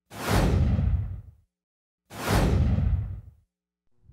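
Two whoosh transition sound effects, about two seconds apart, each a swish of noise that fades away downward over about a second, played as the words of an animated title appear on screen.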